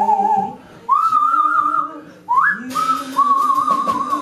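Free-improvised vocal duet: long wavering, whistle-like high tones over a lower sung voice, broken by short breaths. About two-thirds in, a shimmering cymbal wash from the drum kit joins.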